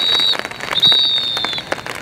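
Referee's whistle blown in two long, steady high blasts, the first cutting off shortly after the start and the second following under half a second later.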